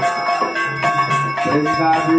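Temple bells ringing continuously for the mangala arati, many overlapping strikes blending into a steady ringing. A lower held tone joins about one and a half seconds in.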